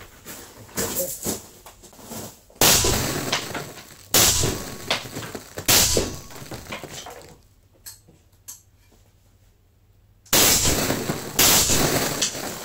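A 5.45 mm AK-200 rifle with a TGPA suppressor firing 7N6 rounds: about five single suppressed shots, spaced one to a few seconds apart, each followed by a short ringing tail.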